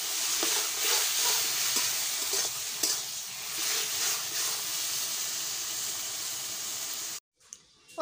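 Taro stems sizzling in a metal wok while a metal spatula stirs them, with a few scrapes and clicks of the spatula against the pan in the first few seconds. The sizzling cuts off suddenly near the end.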